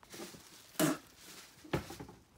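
A man's two short, heavy breaths, about a second apart, as he struggles not to gag after eating dry bird seed.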